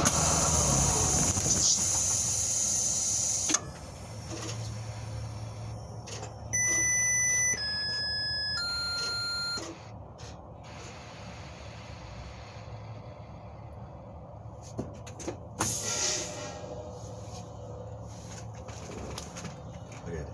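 Inside a school bus cab during an air-brake check: a steady air hiss with the engine rumble fading under it cuts off sharply about three and a half seconds in. Then a dashboard chime sounds three steady tones of about a second each, stepping down in pitch. Near the end come a few clicks and a short burst of air hiss.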